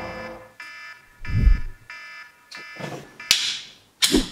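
Smartphone alarm ringing, a bright chiming tone repeating in short pulses about every two-thirds of a second. A deep thump comes about a second and a half in, and a sharp click with a whoosh near the end.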